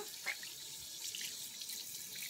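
Water running steadily from a bathroom tap into a sink: a faint, even hiss.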